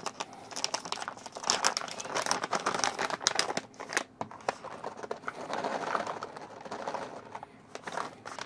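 Plastic pouch of dried cranberries crinkling and crackling as it is opened and tipped to pour the berries out, in irregular bursts that die down near the end.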